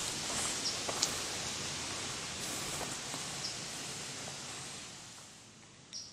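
Steady outdoor ambience hiss with rustling leaves and a few faint ticks, fading away near the end as the camera moves into the rock tunnel.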